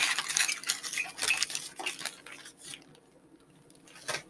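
Small shopping items being handled and set down on a table: a quick run of clicks, clinks and knocks that stops a little before three seconds in.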